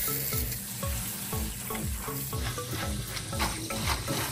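Kitchen tap running onto soybean sprouts in a stainless steel colander, a steady spray of water as a hand rinses and turns them, over background music with a steady beat.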